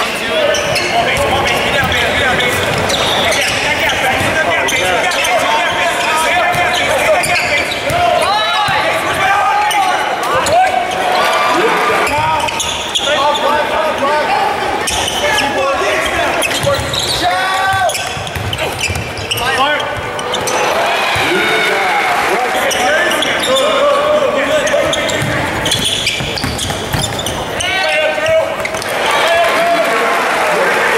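Live basketball play on a hardwood court in a large arena: a ball being dribbled, sneakers squeaking in short chirps, and players' voices and crowd chatter echoing through the hall.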